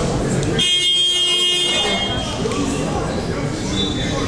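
Basketball scoreboard horn sounding once, a steady buzzing tone lasting about a second and a half, over the chatter of voices in a gym. A brief high tone follows near the end.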